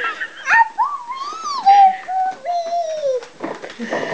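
A toddler's long, high-pitched vocal whine, gliding up and then slowly falling in pitch for nearly three seconds.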